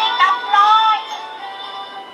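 Children's cartoon soundtrack played through a tablet's small built-in speaker: a high, gliding sung or cartoon voice over music for about the first second, then dying away into a fainter held note.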